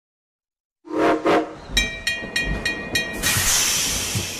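Train sound effects opening a recorded children's song: two short whistle toots, then five evenly spaced ringing dings of a bell, then a long hiss like escaping steam.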